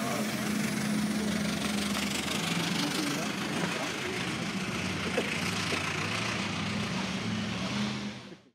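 Early vintage touring car's engine running steadily as the car drives off up the hill.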